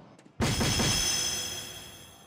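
Soft-tip dart hitting the triple 17 on a DARTSLIVE electronic dartboard, which plays its electronic hit sound effect: it starts suddenly about half a second in, with ringing high tones that fade over about a second and a half.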